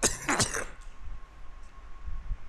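A man coughing, two quick coughs right at the start, then quiet room noise with a faint steady hum.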